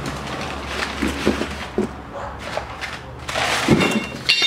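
Hands rummaging in a cardboard box: cardboard and paper rustling with a few light knocks, then a louder crinkling of brown packing paper being pulled out near the end.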